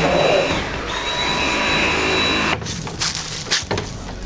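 A vacuum cleaner running with a steady whine that dips briefly in pitch about half a second in. It cuts off abruptly after about two and a half seconds, followed by a few scattered knocks and clicks.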